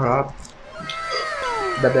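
A cat meowing in long, drawn-out calls that slowly fall in pitch and overlap one another, starting just under a second in.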